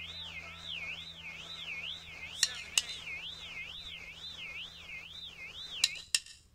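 Warbling electronic tone, sweeping up and down about twice a second, over a steady low hum, with a few sharp clicks. It is the quiet outro of a punk song.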